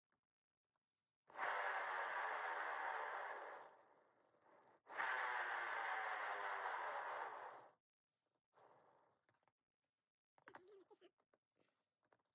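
A paint-pouring spinner turning under a poured ornament, whirring in two spins of about two and a half seconds each, each fading out as it slows.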